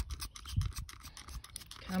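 Plastic trigger spray bottle being pumped, a rapid run of small clicks and scratchy rasps, not yet spraying water properly.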